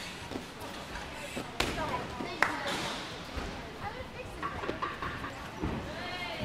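Two sharp knocks from gymnastics equipment, about a second apart, the second with a short metallic ring. Indistinct voices murmur in the gym behind them.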